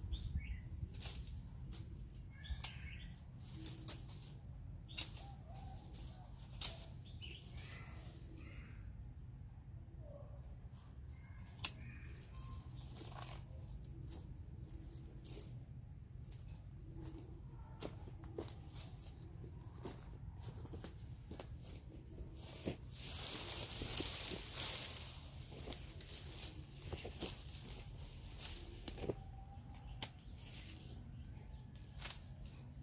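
Leaves and branches rustling, with scattered small clicks and snaps and a few faint bird chirps. A louder burst of rustling comes about three-quarters of the way through.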